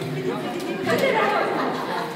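Several people talking at once in a room: overlapping conversation and chatter.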